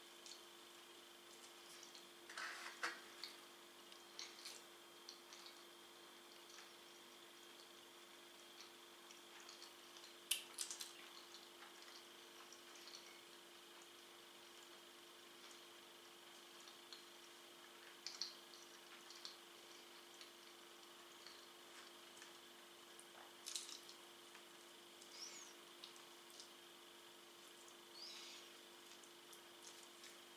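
Faint eating sounds: quiet chewing of pizza with scattered short wet clicks and smacks of the mouth, the clearest about ten seconds in, over a faint steady hum.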